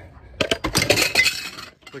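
A burst of rattling and clinking, dense with sharp clicks, starting about half a second in and lasting just over a second.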